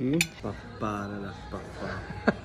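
Knife and fork clink once against a china plate just after the start, as food on the plate is cut.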